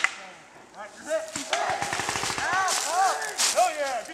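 Paintball markers firing a few sharp pops, mostly near the start, with distant shouting from players over the rest.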